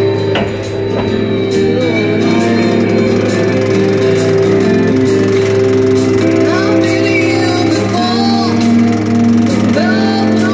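Music with singing and a steady beat, over a steady low hum.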